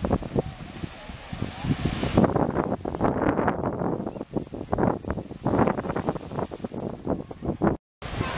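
Indistinct voices of people talking nearby, with wind on the microphone; the sound drops out briefly near the end.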